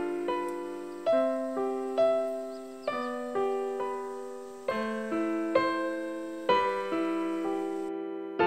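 Background music on a keyboard piano: single notes and chords struck every second or so and left to fade, with a short break at the very end.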